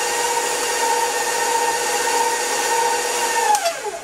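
Electric stand mixer motor running with a steady whine while creaming butter and sugar, then winding down to a stop near the end.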